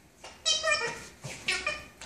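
Wobble Wag Giggle Ball's giggle noisemaker sounding as the ball is moved, in short pitched squealing bursts: two in quick succession, then another.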